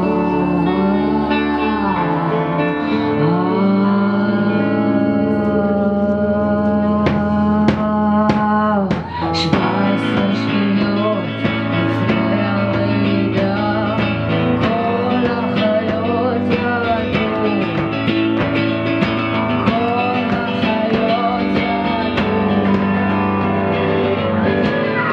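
A live song: a woman singing held, gliding notes over guitar accompaniment.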